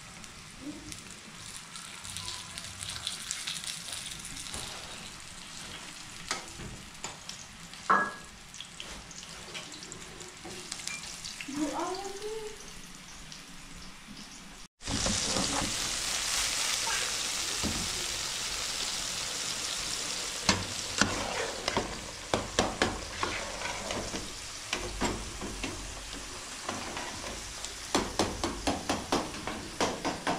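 Food frying in oil in a metal pan, a steady sizzle with scattered clicks. About halfway through, after a sudden break, diced green peppers fry with a louder, denser sizzle. Near the end a utensil taps and scrapes quickly against the pan.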